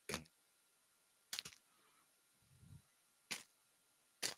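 Faint handling of a hockey card pack's wrapper as it is torn open: three brief sharp crinkles, spaced a second or two apart, with a soft low bump near the middle.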